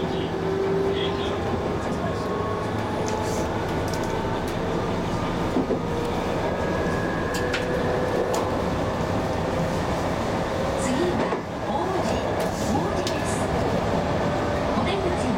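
Steady hum of an electric train standing still, heard from inside the cab, with a few faint small clicks.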